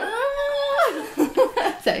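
A long, high-pitched drawn-out cry that rises at the start, holds steady for nearly a second, then falls away, followed by brief chatter.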